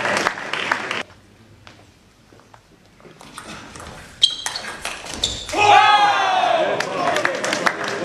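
Table tennis rally in a large hall: sparse sharp clicks of the ball off bats and table for a couple of seconds, ended by a loud shout that falls in pitch, then crowd applause. A loud falling voice also fades out at the start.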